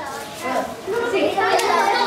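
Children's voices chattering, several talking at once, growing louder about half a second in.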